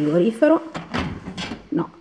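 An old refrigerator's door being pulled open by its lever handle: several sharp clicks and knocks from the latch and door.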